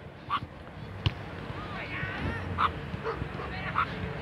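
A dog barking a few short, separate times in the distance over open-air background noise.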